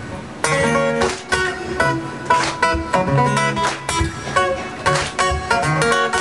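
Acoustic guitar playing an instrumental passage with no singing: quickly picked single notes and chords, several sharp attacks a second.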